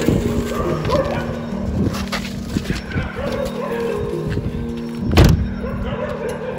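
Background music with steady held notes, over rustling and knocks of movement, and a single loud thud about five seconds in, typical of a car door being shut.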